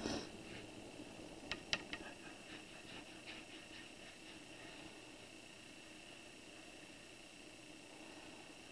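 Faint sounds of a watercolour brush working paint over wet paper, with a few light clicks in the first two seconds and soft ticks for a little longer. After that it is quiet room tone with a faint steady high hum.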